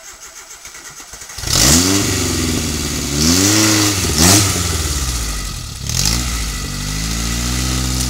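Suzuki Samurai rock crawler's engine being cranked with a quick, even ticking, catching about one and a half seconds in, then revved in several rising and falling blips as the buggy crawls over the boulder.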